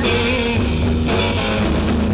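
A 1969 beat-group demo recording of rock music, with electric guitars, bass guitar and drums playing continuously.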